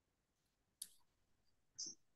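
Near silence with two brief, faint clicks: one a little under a second in and another near the end.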